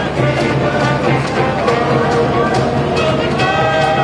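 Live brass band of saxophones, trumpets and a large bass horn playing an upbeat tune over a steady beat.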